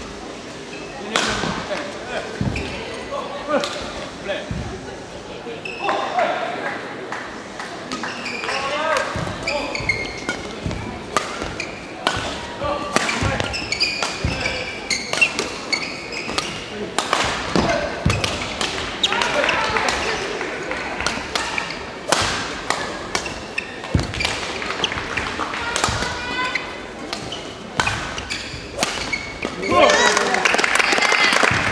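A badminton rally in a large hall: repeated sharp racket strikes on the shuttlecock and squeaking court shoes, with indistinct voices around the hall.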